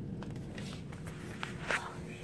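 Faint knocks and rustling from a hand-held phone being moved about, over a steady low background rumble.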